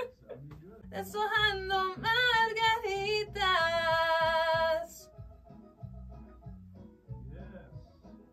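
A woman singing into a studio microphone over a backing track with a steady low beat. Her voice comes in about a second in, moves through a few phrases with vibrato and ends on a long held note halfway through, after which only the backing track goes on.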